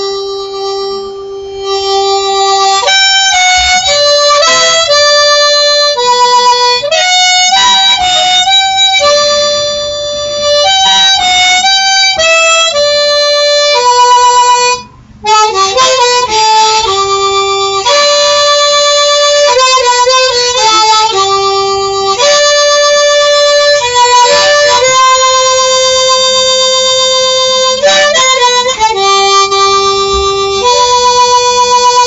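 Harmonica played solo: a melody of long held notes, with a short break about halfway through.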